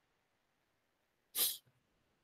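A single short breath sound, a quick sniff or intake of air, about one and a half seconds in.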